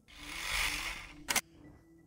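Video transition sound effect: a whoosh that swells and fades over about a second, ending in one sharp camera-shutter click.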